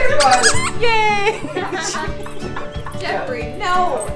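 Squeaker in a plush lamb dog toy squeaking a couple of times in the first second or so, over background music.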